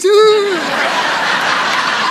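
A woman's voice trails off in a falling held tone over the first half second, then a studio audience breaks into steady, sustained laughter.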